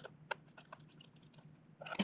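Faint, irregular clicks and ticks of a small precision screwdriver working a screw in a water-cooling pump housing, with a louder clatter just before the end as the screwdriver is set down on a wooden desk.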